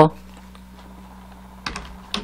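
Computer keyboard keys clicking as typing begins about a second and a half in, after a quiet stretch with only a faint steady hum.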